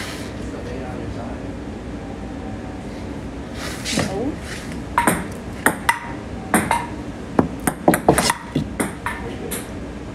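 Table tennis rally: a ping-pong ball clicking in quick succession off the paddles and the table, about two hits a second, starting about four seconds in and running for about five seconds.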